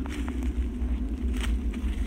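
A few faint crunching steps on dry leaf litter over a steady low rumble on the handheld microphone.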